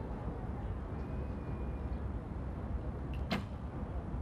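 A recurve bow shot: one sharp snap of the string's release about three seconds in, over a steady outdoor background hum.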